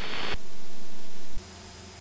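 Loud, even static hiss on the aircraft's radio/intercom audio just after a radio transmission ends, cutting off suddenly about one and a half seconds in.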